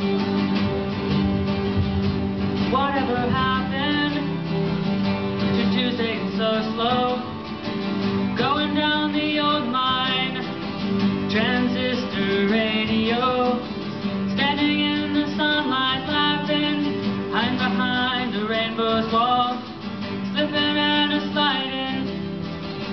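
Group of male voices singing in harmony over acoustic guitar accompaniment, with no clearly sung words in this stretch.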